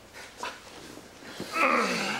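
A man's short wordless vocal sound, drawn out and falling in pitch, starting about one and a half seconds in; before it there are only faint knocks.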